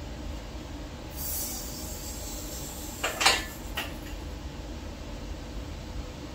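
Engine hoist working under the weight of a cast-iron V8 block hung on chains: a short hiss about a second in, then a loud metallic scrape about three seconds in and a single clack soon after.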